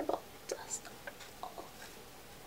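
Faint whispering, heard as a few soft, short sounds.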